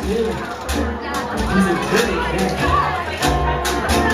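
A jug band playing live: guitar, washboard and bass keeping a steady beat, with voices over the music.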